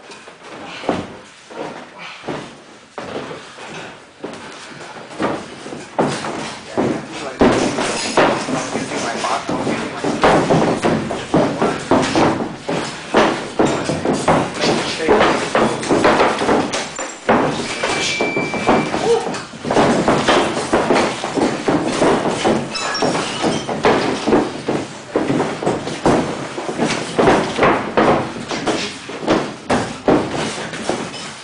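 Boxing sparring in a ring: padded gloves landing and feet shuffling on the canvas in a stream of quick knocks, with indistinct voices talking throughout. A short high beep sounds a little past halfway.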